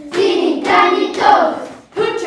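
A group of children's voices singing together in short sung phrases, about two a second.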